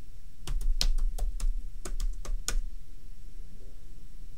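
Typing on a computer keyboard, entering a short command: about ten quick keystrokes over two seconds, starting about half a second in, then stopping.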